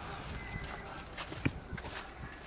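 Footsteps on gritty, rubble-strewn ground, with a few sharp steps in the second half, over a steady low background noise.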